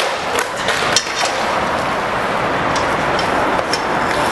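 A steady loud rushing noise with a few sharp skateboard clacks on concrete, one about a second in and several more near the end.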